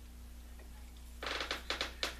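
Low steady hum, then a short run of light clicks about a second in as a plastic cover piece is handled against a radio chassis.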